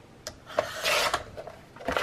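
Sliding paper trimmer's cutting head drawn along its rail, slicing through a sheet of 28 lb paper: a rasping swish of well under a second starting about half a second in, then a sharp click near the end.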